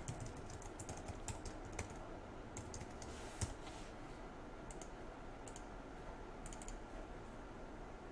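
Faint typing on a computer keyboard: a quick run of keystrokes in the first two seconds, then a few scattered clicks.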